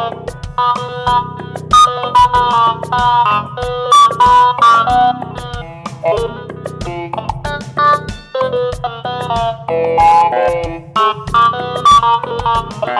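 Roland Juno DS synthesizer playing quick runs of short, plucked-sounding notes over a steady drum-machine beat from an Alesis SR16, played live.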